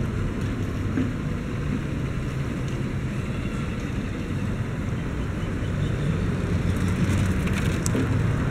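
Steady low rumbling background noise, with a few faint clicks near the end.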